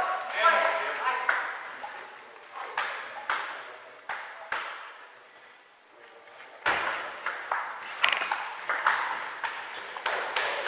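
Table tennis ball clicking off bats and the table: a few scattered hits in the first half, then a quick rally of clicks from about two-thirds of the way in.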